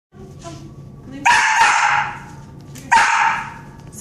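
A dog barks twice, two drawn-out barks about a second and a half apart, each fading away.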